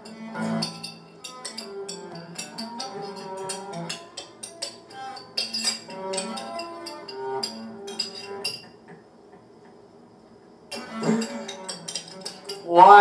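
Music cut together from clips of a spoon clinking against a glass jar: fast, sharp taps and short pitched notes strung into a rhythmic tune. It drops away for a couple of seconds near the end, then starts again.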